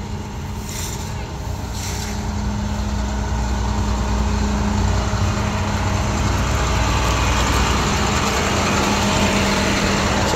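Flatbed tow truck's engine idling, a steady low rumble with a constant hum, growing louder over the first few seconds as the microphone moves up alongside the truck.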